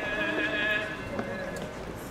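Voices singing a slow liturgical hymn with long held notes, over the scattered footsteps of a walking crowd.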